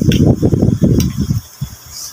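Hands mixing raw fish with vinegar and onion in a bowl on a table, heard as a dull, low rumble with uneven knocks that dies away about a second and a half in.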